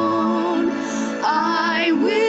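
A woman singing: a long held note, then a new phrase starting about a second in, with a rising slide in pitch near the end.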